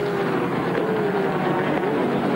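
Group A touring cars racing past in a pack, engines running at high revs. One engine note falls slowly, and another dips and rises again near the end.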